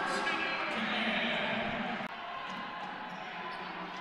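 Game sound in a basketball gym: a steady murmur of voices ringing in the hall, with a few faint knocks. It drops a little about halfway through.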